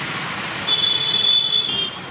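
Close street traffic with a passing motorbike. A steady, high-pitched squeal sounds over it for about a second and steps slightly lower in pitch near the end.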